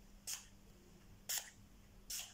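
Pump-mist bottle of Essence Keep It Perfect makeup setting spray spritzed twice at the face, each spritz a short hiss about a second apart.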